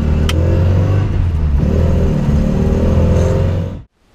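MGB GT's 1.8-litre B-Series four-cylinder engine and road noise heard from inside the cabin while driving, the engine note rising and dipping a couple of times with the throttle. A sharp click comes about a third of a second in, and the sound cuts off suddenly just before the end.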